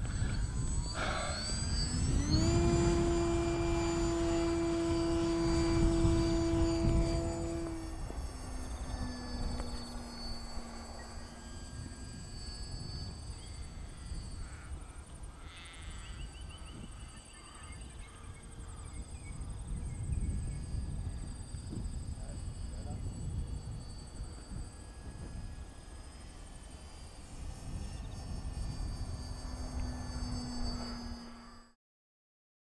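Radio-controlled model warplane's motor and propeller spinning up in a rising whine about two seconds in, then held at a steady high pitch for the launch. About eight seconds in the tone drops lower and fainter as the plane flies away, and it grows louder again near the end as it passes closer.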